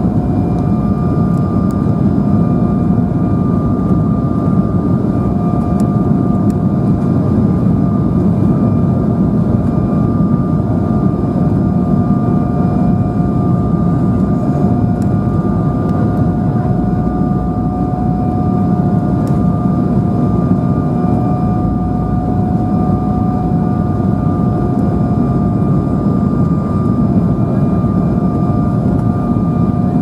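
Cabin noise inside an Embraer 190 on approach: a steady loud rush of air and engine rumble from its GE CF34-10E turbofans, with a steady engine whine that wavers slightly in pitch.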